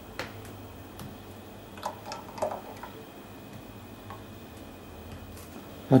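A few light clicks and taps of a glass jug against ceramic bowls as thick gelatin syrup is poured, over a low steady hum.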